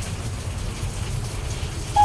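Steady background of rain and wind: a low rumble with a faint hiss above it.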